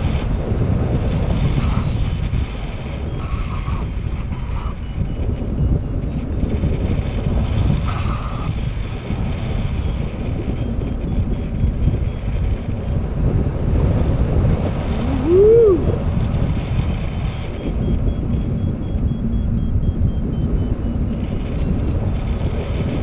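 Airflow buffeting the action camera's microphone in flight under a tandem paraglider: a steady low rumble of wind. About two-thirds of the way through, a brief tone rises and falls once, the loudest moment.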